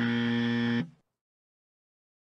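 A man humming a flat, steady "mmm" for just under a second, cutting off abruptly into dead silence.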